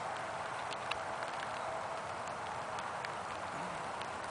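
Steady outdoor background hiss with a few faint scattered clicks and ticks.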